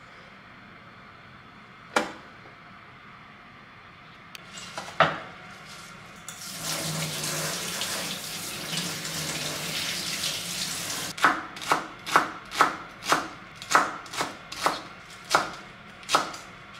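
A couple of knocks on the worktop, then a kitchen tap runs for about five seconds as greens are rinsed under it. After that a kitchen knife chops celery leaves on a wooden cutting board in quick, even strokes, about two a second.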